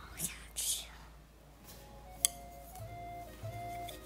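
Short crisp crackles in the first second as chopsticks press into crisp fried tofu skin, then a single sharp click a little past the middle. Gentle background music with a stepping melody and bass comes in over the second half.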